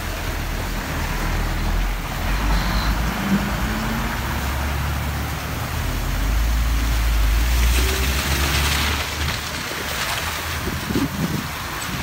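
Road vehicles driving through standing floodwater: the low rumble of a school bus's engine as it passes, over the hiss of tyres through water, with a louder hiss around eight seconds in.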